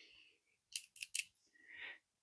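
Three or four short, sharp clicks bunched about a second in as multimeter test probes are picked up and handled, the hard plastic probes tapping, then a faint soft rub near the end.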